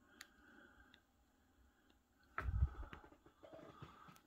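A few faint clicks, then a louder low thump about two and a half seconds in, followed by faint rustling: handling sounds as the camera is swung from the desk up to the ceiling.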